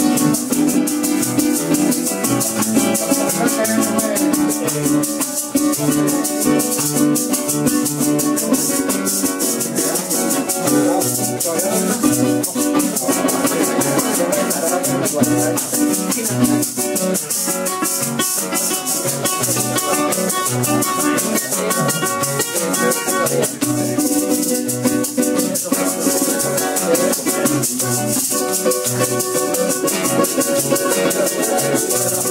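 Instrumental passage of Colombian llanera music: a strummed cuatro and a nylon-string guitar over a steady maraca rhythm, with plucked bass notes, likely from the harp, moving underneath.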